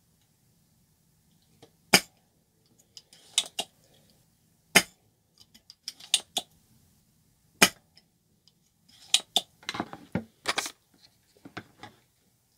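Sharp single clicks a few seconds apart, then a quicker cluster of clicks and clinks near the end: a spring-loaded desoldering pump snapping and small metal tools handled while old solder is taken off a cable connector.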